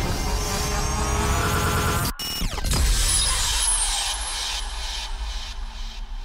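Intro sound effects: a low rumble under a rising whine that builds for about two seconds, breaks off suddenly, then a falling sweep that dies down.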